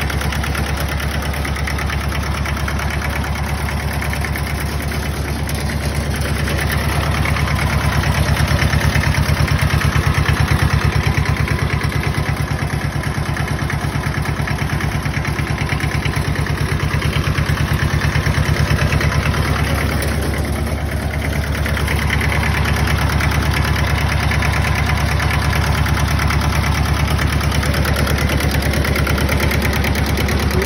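Small tractor diesel engine idling steadily, with an even, regular firing beat.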